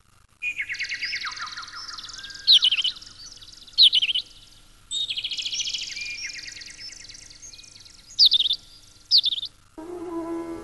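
Songbirds chirping and trilling in a dense run of calls, starting about half a second in and breaking off briefly near the middle. Four louder, sharp chirps stand out, two in each half.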